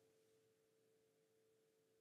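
Near silence: a pause in the talk with only a very faint steady tone.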